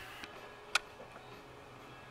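A single sharp click about three-quarters of a second in, with a few fainter ticks after it, over a faint steady low hum.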